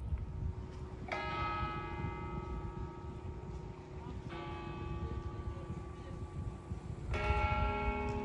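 A church bell struck three times, about three seconds apart, each stroke ringing on and fading slowly, over a steady low background rumble.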